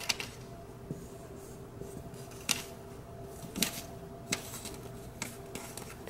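Faint paper handling: a paper sticker strip being laid and pressed onto a planner page by hand, with a few light taps. A low steady hum runs underneath.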